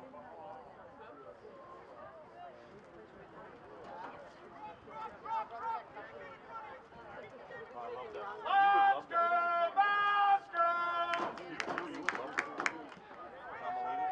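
Distant voices and chatter around an outdoor soccer field. Past the middle come four loud, high-pitched shouts in quick succession, then a few sharp cracks.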